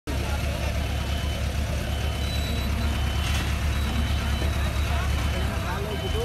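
A large engine running steadily, a low pulsing hum, with voices in the background.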